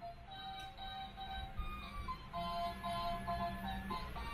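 Toy claw machine playing its tinny electronic tune, a simple melody of single beeping notes, over a low steady hum.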